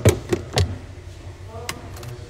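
Glass photo frames being handled and set down on a table: four sharp knocks and clicks, three close together in the first second and one more near the end.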